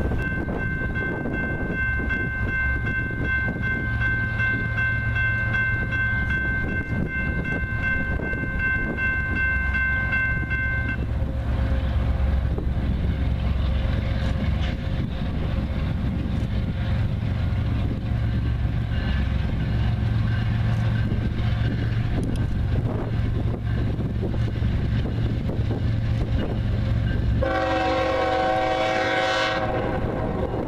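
Diesel locomotive horn on an approaching Norfolk Southern loaded train: one long blast lasting about eleven seconds, then a second, lower-pitched blast near the end as the train draws close. A steady low rumble of the locomotives and wind buffeting the microphone runs underneath.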